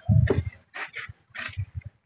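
Short animal calls: one louder call at the start, then several brief softer ones.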